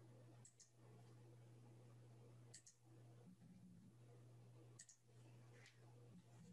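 Faint computer mouse clicks, mostly quick double clicks, a few times over a steady low electrical hum; otherwise near silence.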